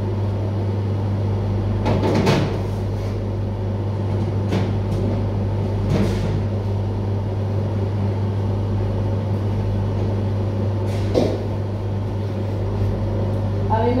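Steady low hum of kitchen machinery, with a few light knocks as fruit and a carved melon basket are handled on a cutting board.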